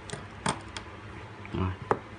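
A few small, sharp clicks of a precision screwdriver and small metal parts on an opened iPhone 4's frame, one about half a second in and the loudest just before the end.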